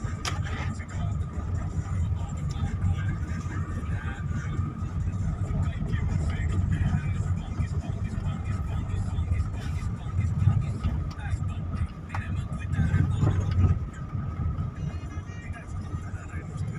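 Car cabin noise while driving slowly on a snow-covered road: a steady low rumble of engine and tyres, swelling briefly twice in the second half.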